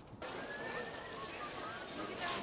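Steady outdoor background hubbub starting suddenly just after the start, with faint distant voices in it.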